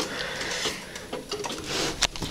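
Handling noise: rubbing and scraping with a few light clicks as a graphics card is worked into a PC case, with a brighter scrape near the end.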